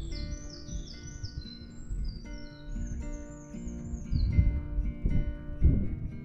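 Background music with steady held notes, over which a bird sings a run of quick, repeated descending chirps through the first few seconds. Two short low rumbles come near the end.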